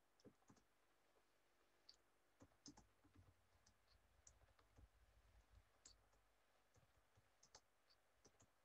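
Near silence with faint, irregular clicking from a computer keyboard.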